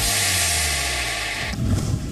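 News-bulletin title sting: a loud electronic whoosh of hiss over the intro music, cutting off sharply about one and a half seconds in, then a low swell as the segment changes.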